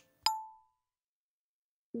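A single short, bell-like ding sound effect, struck about a quarter second in and fading away quickly.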